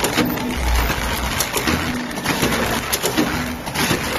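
Drip coffee bag packing machine running, cycling with a repeating pattern of clicks, a short low hum and a brief tone about every one and a half seconds.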